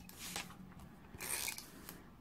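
Handheld adhesive tape pen (tape runner) drawn along the edge of a sheet of patterned paper, laying down tape in two short strokes.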